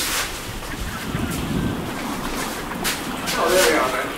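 A man speaking briefly near the end, over a steady background hiss.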